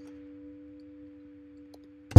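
A faint, steady electronic tone at one pitch, slowly fading: a note from the beat left ringing on after the rest of the music stops. A few faint clicks come near the start and near the end.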